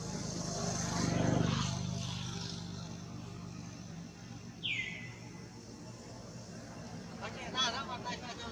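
A motor vehicle's engine hum swells to its loudest about a second in, then fades away. Around the middle comes a single falling whistled bird call, and a short warbling call follows near the end.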